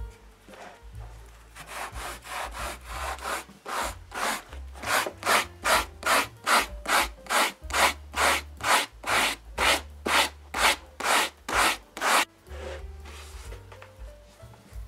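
Coarse sandpaper on a hand block rubbed back and forth over a motorcycle seat's foam base, about two to three strokes a second, evening out and shaping glued-in foam patches. The strokes grow louder about five seconds in and stop just after twelve seconds.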